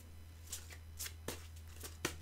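A few faint, brief rustles and taps of tarot cards being handled, over a low steady hum.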